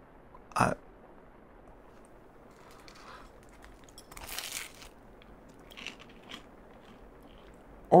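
A person biting into pizza and chewing it. There is one crunchy bite about four seconds in, then faint soft chewing.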